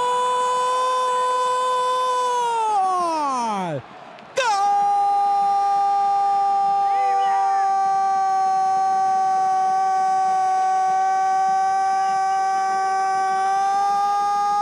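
A football commentator's long, held goal cry: one steady, sustained note that slides down and breaks off about four seconds in. After a breath, a second, slightly lower note is held steady for about ten seconds.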